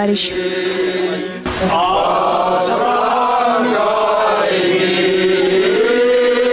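A mixed group of men and women singing a Chuvash folk song together in unison, with slow, long-held notes.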